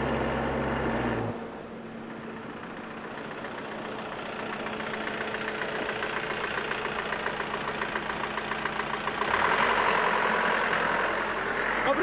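A small flatbed truck's engine approaching along a road and driving past, growing louder and loudest near the end as it goes by. About a second in, a steady low engine drone cuts off.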